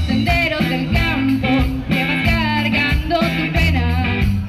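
A band playing a folk song at a concert, with held bass notes and a gliding melody line above them.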